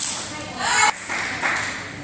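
Table tennis ball clicking sharply off paddle and table during a doubles rally in a sports hall. A short shout rings out about half a second in and is the loudest sound.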